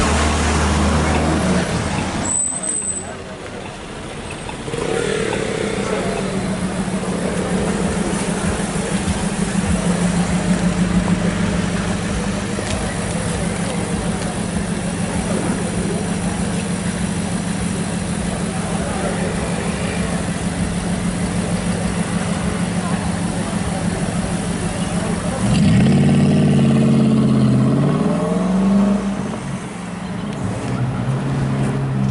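Audi R8 engine idling with a steady low note, then revving and accelerating near the end, its pitch rising before the sound drops away as the car pulls off.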